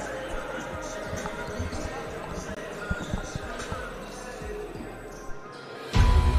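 A basketball bouncing on a hardwood gym court, with irregular single thuds in a reverberant hall and a faint background of distant voices.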